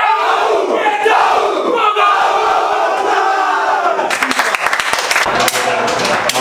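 A football team in a huddle shouting together in a rallying cry, many voices at once. It stops about four seconds in and gives way to clattering and scattered voices.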